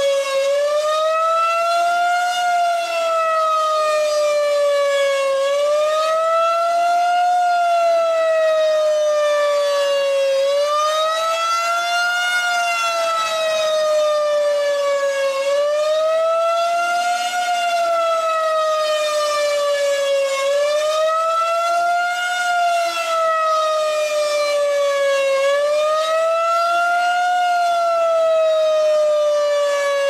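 Federal Signal 2001-SRN rotating electromechanical outdoor warning siren sounding the attack signal used for a tornado warning, here as a test: a loud wailing tone that rises and falls about every five seconds as the horn turns.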